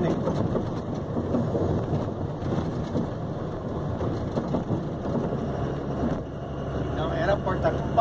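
Steady road noise inside a moving vehicle's cab in highway traffic: a dense rumble of engine, tyres and passing traffic, a real racket.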